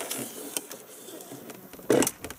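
Parachute fabric rustling and scraping as it is pushed by hand down into the drone's parachute tube, with a short louder knock near the end.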